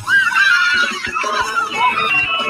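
A high-pitched cartoon singing voice, pitch-raised, holds one long wavering note that bends up and down, with a few soft beats under it. It is the last held note of a children's cartoon song, played through computer speakers.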